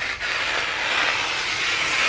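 Scissors pushed through a sheet of wrapping paper in one long continuous rasp. The paper rips instead of cutting cleanly, which the cutter puts down to scissors that are not sharp enough.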